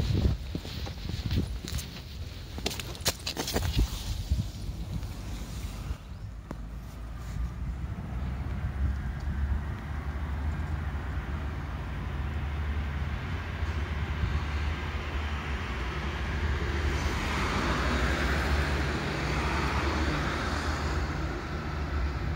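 Outdoor street ambience: a steady low rumble that swells and fades again near the end, with footsteps and handling knocks over the first few seconds.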